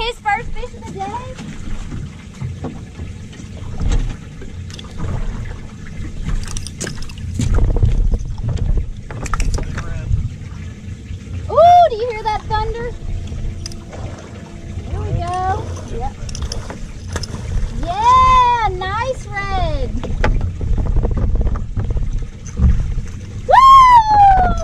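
Steady low wind rumble on the microphone, with short, high excited shouts from people about halfway through, twice more in the second half and again near the end.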